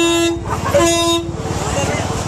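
A vehicle horn sounds twice in short blasts, each about half a second long, with a brief gap between them.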